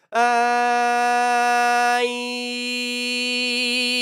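A man sings one long steady note on a single pitch, changing vowel about halfway through so the tone turns less bright. He is showing how the vowel shape of the mouth changes brightness on the same note.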